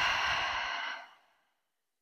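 A woman's deep, audible breath: a steady breathy rush that fades away just over a second in.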